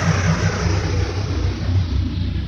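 Intro sound effect: a deep, steady rumble with a hiss above it that slowly fades.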